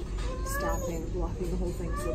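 A young child's high-pitched voice, vocalising without clear words, its pitch rising and falling, over a low steady background rumble.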